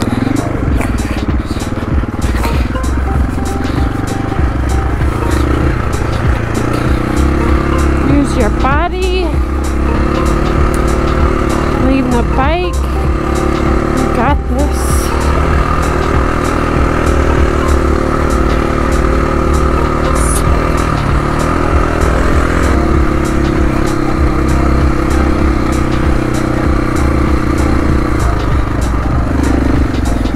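KTM dual-sport motorcycle engine running steadily while riding a dirt and gravel trail, heard on board from the rider's position. It revs up in a few rising surges about a third of the way in and again near halfway.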